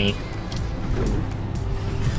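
Steady low road and engine noise heard from inside the cab of a moving vehicle.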